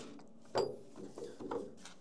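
Heavy machined steel press tooling handled and set down on a steel press table: a sharp metallic clink about half a second in, then a few softer knocks.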